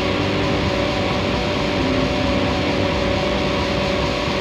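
Distorted electric guitars held in a steady, noisy drone with a few sustained tones and no drums, a break in a heavy rock song.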